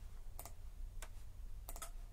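A few sharp clicks, a close pair near the end, from the output relays of a MicroLogix 1000 PLC switching off as the controller leaves run mode for a program download.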